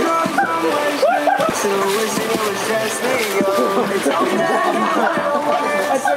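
A group of young men shouting and laughing over one another, with a pop song playing underneath.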